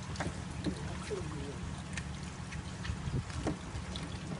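Steady low rumble with a few faint, scattered clicks and scrapes from a dog nosing at wet concrete and water around a stranded fish.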